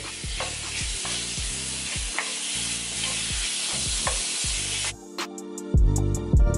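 Shrimp sizzling in hot melted butter and garlic in a cast-iron skillet, with a wooden spatula stirring and knocking against the pan. About five seconds in the sizzling stops and music with a beat takes over.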